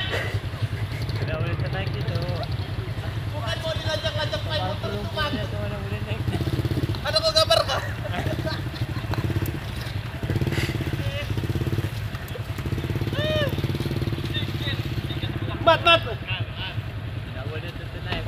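Small low-capacity underbone motorcycle engine running under load and unable to pull the bike up a slippery dirt slope while it is pushed from behind. The engine note holds fairly steady throughout, with voices over it at times.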